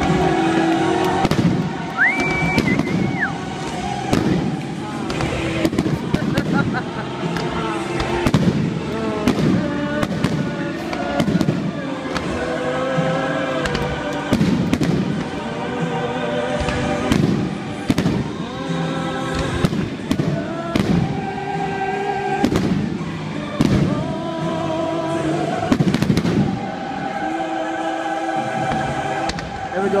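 Aerial fireworks launching and bursting in rapid succession, many bangs close together, over loud music with singing.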